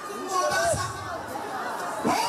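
A woman's voice through a microphone over the chatter of a crowd of women in a hall.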